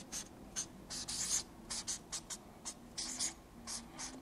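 Felt-tip marker writing letters on a paper flip-chart pad: a quick, uneven run of short scratchy strokes.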